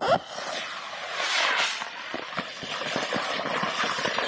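Wind buffeting the microphone, starting abruptly with a loud burst and staying gusty, with scattered knocks and scuffs.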